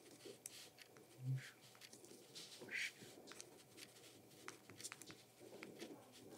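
Faint scratching and ticking of ballpoint pens writing on paper, with a brief low hum about a second in.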